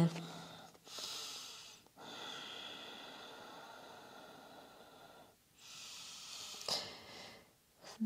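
A woman taking slow, deep breaths: three long breaths, the middle one about three seconds long.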